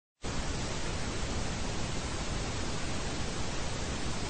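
Television static: the steady hiss of an untuned analogue TV, starting abruptly just after the beginning and holding at an even level.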